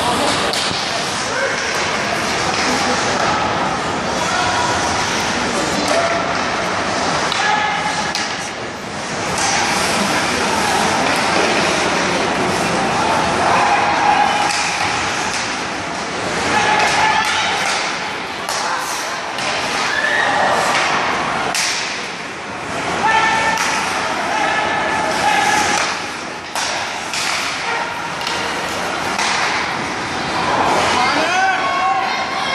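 Ice hockey game in an indoor rink: spectators and players talking and shouting over one another, with frequent sharp clacks and thuds of sticks, puck and bodies against the boards and ice. The voices swell in several loud bursts.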